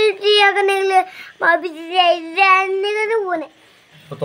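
A young child singing in a high voice, drawn-out notes in two phrases, the second falling away shortly before a brief pause.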